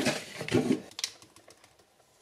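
Wooden spoon stirring cake batter in a bowl, a run of quick clicks and knocks against the bowl that dies away after about a second.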